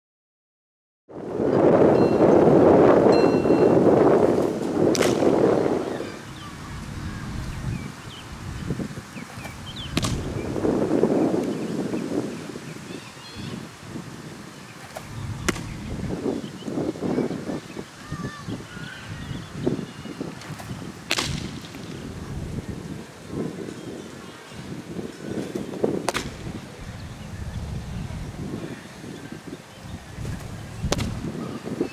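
Wind buffeting the microphone, loudest in the first few seconds, with a sharp pop about every five seconds: pitched baseballs smacking into the catcher's mitt during a bullpen session.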